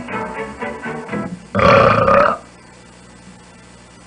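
Logo jingle: a quick run of short pitched notes, then a loud, gruff vocal sound like a burp lasting under a second.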